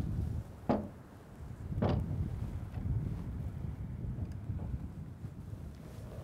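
Wind rumbling on the microphone, with two short knocks about a second apart near the start as a portable cassette recorder is handled and set down on a car's roof.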